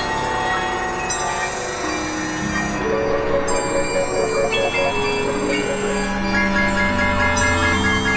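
Several experimental electronic music tracks playing over one another: a dense layer of sustained tones and drones. A note pulses about five times a second from about three seconds in, and a quickly repeating high note enters at about six seconds.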